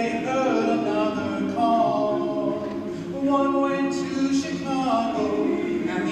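Large male a cappella choir singing in harmony, holding sustained chords that shift from one to the next.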